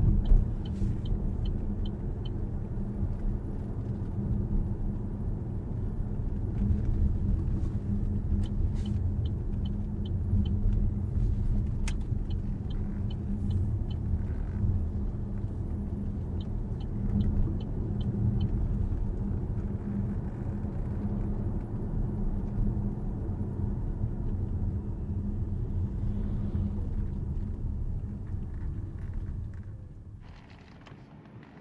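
Steady low road and tyre rumble inside the cabin of a 2023 Opel Grandland GSe plug-in hybrid driving through town at low speed. A few short runs of quick, faint high ticks come and go. The sound fades out near the end.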